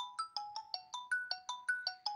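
Mobile phone ringing with a melodic ringtone: a quick run of short, decaying notes, about six a second.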